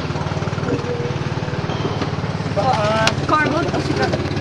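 A small engine running steadily with a fast, even beat, and voices talking briefly near the end.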